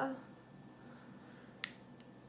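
A single short, sharp click about a second and a half in, against quiet room tone, as small makeup items are handled on a tabletop.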